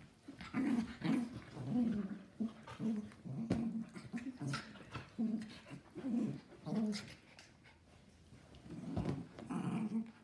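Miniature schnauzer and giant schnauzer play-fighting, giving a string of short, low growls. The growling eases for a second or so near the end, then starts again.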